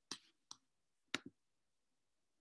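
Computer mouse clicks: one near the start, another about half a second later, and a quick pair just past a second in.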